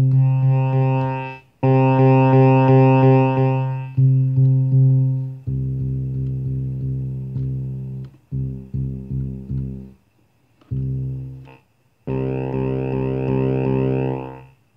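Krueger 13-note string bass synthesizer playing a held low bass note through a guitar amplifier while its tone control is turned. The note is bright and buzzy at first, goes dull and mellow about five seconds in, drops out and restarts a few times, and turns bright again near the end.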